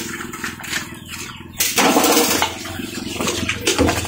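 Young pigs in a concrete pen, with one loud, rough pig grunt or squeal about one and a half seconds in, over a steady low hum.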